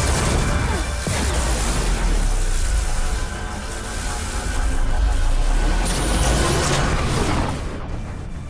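Loud dramatic film-score music mixed with fight sound effects, including a boom about a second in.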